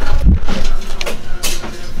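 Handling noise on a camera-mounted microphone: a heavy low rumble at the start, then scattered short rustles and knocks as the handheld camera is moved about and clothing shifts against it.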